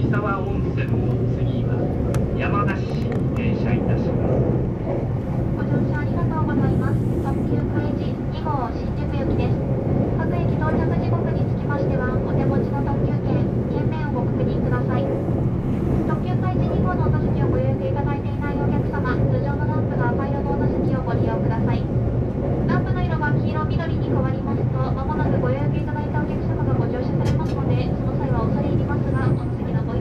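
Steady running noise of an E353 series limited express train, heard from inside the passenger car as it travels along the line: a constant low rumble of wheels and running gear on the rails.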